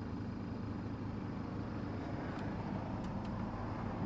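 BMW 520d's four-cylinder diesel engine idling, a steady low hum heard from inside the cabin.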